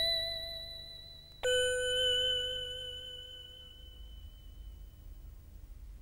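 Two-note chime sound effect, a ding then a lower dong: the first note is already ringing and fading, and the second, lower note is struck about one and a half seconds in and rings out slowly until it fades.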